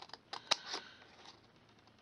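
Scissors snipping into scored cardstock: a few short, sharp cuts in the first second, then quiet.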